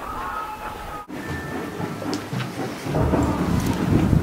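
Wind buffeting the camera microphone: an irregular, gusting low rumble that starts after a brief cut about a second in and grows stronger in the last second.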